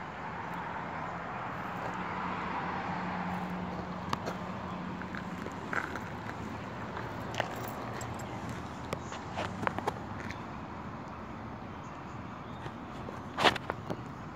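Outdoor background noise picked up by a handheld phone, with a faint steady hum, scattered light clicks and rustles, and one louder click near the end.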